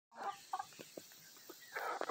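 Chickens clucking faintly: a few short clucks, then a longer call near the end.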